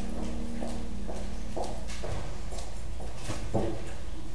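Irregular knocks and footsteps on a hard floor, about two a second, from people moving about in a church. Over the first half, the last held chord of the prelude music dies away.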